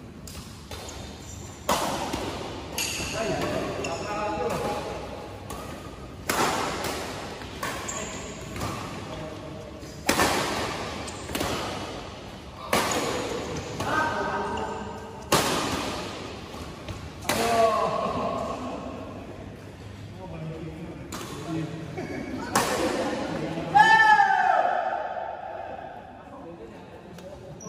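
Badminton rackets striking a shuttlecock in a rally: sharp cracks at irregular intervals of about one to two seconds, echoing in a large hall, with the loudest near the end.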